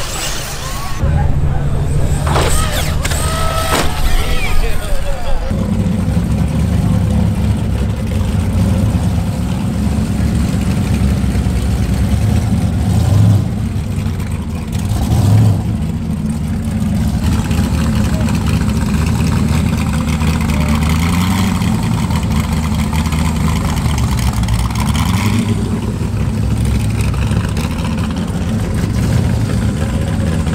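Off-road race prerunner truck's stock 4.0-litre engine running at a low, steady idle. It grows louder about five seconds in, and its pitch rises and dips slightly a few times later on.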